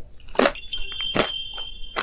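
Two crisp bites into crunchy fried food. A high, steady electronic beep is held for about a second and a half between and after them.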